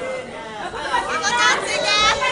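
Spectators' overlapping voices chattering and calling out, growing louder about a second in.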